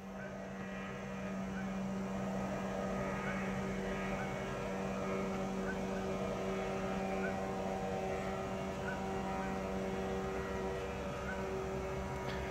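A steady mechanical hum made of several held pitches, the lowest and strongest a low drone, with no change in level or pitch.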